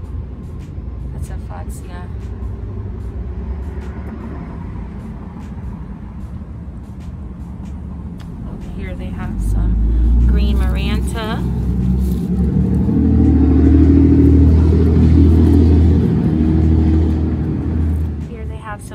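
A motor vehicle's engine running close by, a low rumble that grows much louder about halfway through. A few brief voices are heard near the middle.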